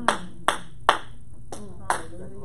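Single hand claps at a steady beat of about two and a half a second. Three come close together, then there is a short break and one more near the end.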